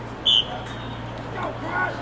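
A referee's whistle gives one short, high-pitched blast, the signal that starts a lacrosse faceoff. Spectators' voices follow near the end.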